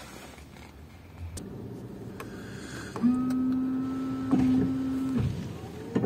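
Ford Fusion's windscreen wiper system running: a steady electric motor whine that starts about three seconds in and cuts off about two seconds later, with a knock partway through.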